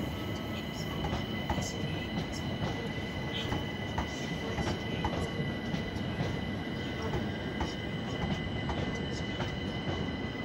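London Overground Class 378 electric multiple unit rolling into the station: a steady rumble of wheels on track, irregular clicks as the wheels cross rail joints and points, and a steady high-pitched whine.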